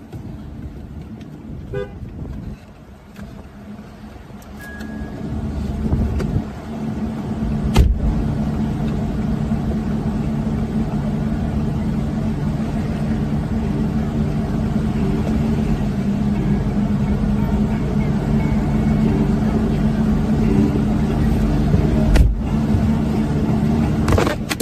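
A motor vehicle's engine running steadily, heard from inside a car's cabin. It grows louder over the first several seconds and then holds steady, with a sharp knock about eight seconds in and another near the end.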